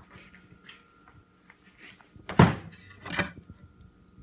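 Objects being handled on a workbench: light rustling and small knocks, then one heavy wooden thunk about halfway through and a lighter knock under a second later.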